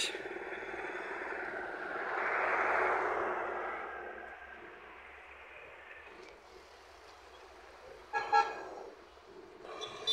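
Roadside traffic: a vehicle's noise swells past about two to four seconds in, then fades. A little after eight seconds, a vehicle horn gives a short toot.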